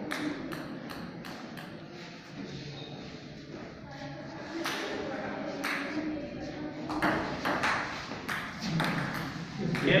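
Table tennis ball clicking sharply off the paddles and table in a rally: a few clicks in the first couple of seconds, then a quicker run of clicks from about halfway through.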